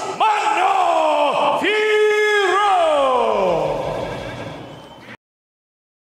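A ring announcer's voice bellowing the winner's name in a long, drawn-out call, the final syllable held and sliding steadily down in pitch as it fades. The sound cuts off abruptly about five seconds in.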